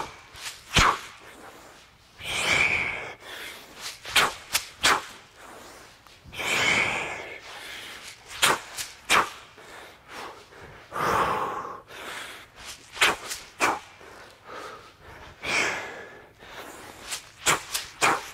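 A man breathing hard through a set of clubbell drill-driver swings: a long, forceful exhale with each rep, about every four seconds. Short sharp clicks and scuffs fall between the breaths.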